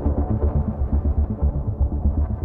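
Electronic music played live on a Roland MC-101 groovebox: a looping synth sequence over a rapid, steady pulsing bass.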